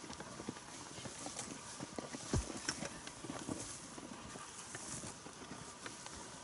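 Faint, irregular light knocks and thuds, with one deeper thud a little past the middle.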